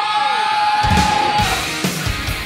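Excited yelling and whooping over loud rock music. A long held note ends about a second and a half in, and heavy drum hits come in partway through.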